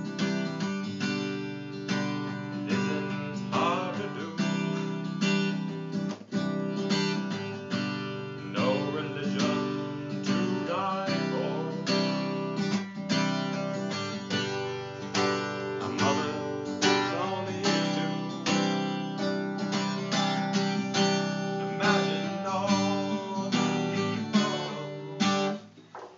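Acoustic guitar strummed in a steady rhythm, chords ringing on one after another, stopping near the end.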